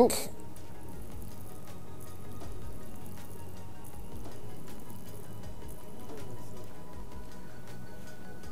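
Soft background music with sustained tones, swelling gently a few times.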